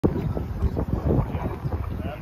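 Wind buffeting the phone's microphone: a gusty, uneven low rumble.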